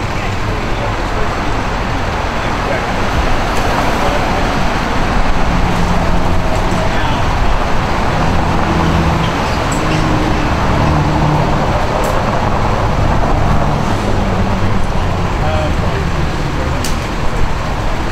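Steady road traffic noise from passing vehicles, with faint indistinct voices underneath.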